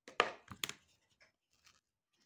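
A kitchen utensil knocks sharply a few times in quick succession within the first second. A metal knife then scrapes lightly as it starts spreading cocoa whipped cream over a sponge cake layer.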